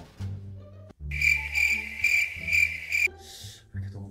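Cricket chirping sound effect, a high pulsing trill lasting about two seconds that starts about a second in, laid over quiet background music.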